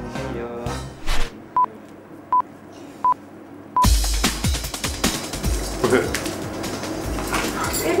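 Background music ends about a second in, then four short, steady-pitched electronic beeps evenly spaced like a start countdown. The last beep is cut off by a sudden loud burst of scuffling, knocking and rustling as the frozen T-shirt challenge starts.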